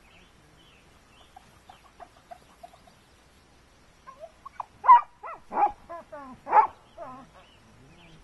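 A dog giving a series of short, high-pitched barks and yelps, the loudest three about a second apart in the second half.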